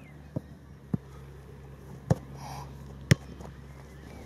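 Four sharp thuds of a football being struck during goalkeeper drills, the loudest about three seconds in, over a steady low hum.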